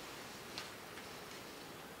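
Faint clicks of laptop keys or trackpad over low room hiss, one click standing out about half a second in.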